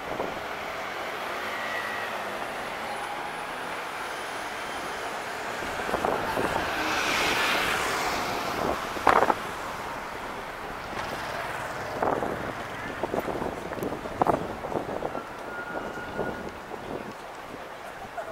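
City street traffic: cars passing on the road, one louder passing swelling up and fading away around the middle, with brief voices of passers-by.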